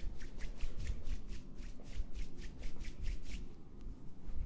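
A barber's palms being rubbed briskly together, slick with hair product just sprayed into them: quick back-and-forth swishes, about five a second, that stop shortly before the end.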